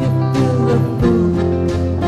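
Live band playing an instrumental passage: electric guitar over drums with a steady beat.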